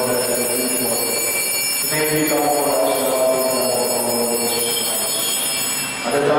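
Liturgical chanting during Mass: a voice holds long sustained notes, shifting pitch every second or two, with a faint steady high-pitched whine underneath.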